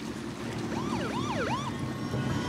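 An emergency siren yelping in three quick up-and-down sweeps about halfway through, over a steady low rumble.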